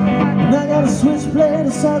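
Live country-blues song played on a hollow-body guitar through a PA system, with a melody line bending up and down. The singer comes back in with a word near the end.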